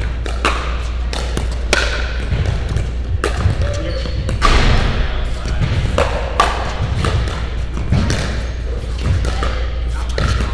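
Pickleball rally in a large indoor hall: sharp pops of hard paddles striking the plastic ball and the ball bouncing on the court, coming irregularly every half second to a second, with room echo over a steady low hum.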